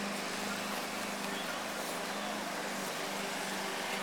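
A steady background motor drone: a constant low hum holding one pitch over a soft even noise, with no clear knocks or changes.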